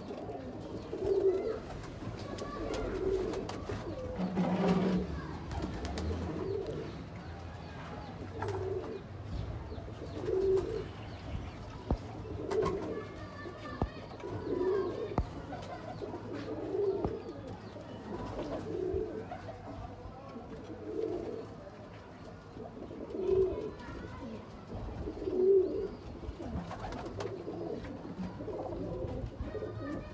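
Domestic high-flyer pigeons cooing, a low coo repeating about every two seconds, with scattered sharp clicks.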